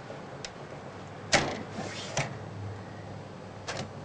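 Clicks and a brief scrape from circuit boards being handled in the Altair 8800b's bus card cage: a loud click with a short rustle about a third of the way in, another click a second later, and a quick double click near the end.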